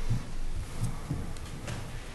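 A few soft, low thumps and light clicks of papers and objects being handled on a meeting table.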